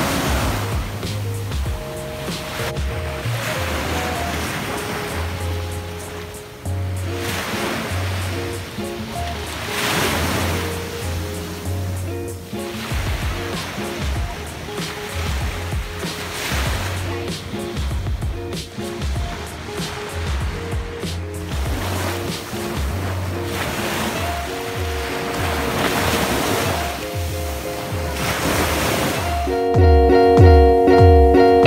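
Small waves breaking and washing up a sandy shore, swelling and fading every few seconds, under background music with held notes and a bass line.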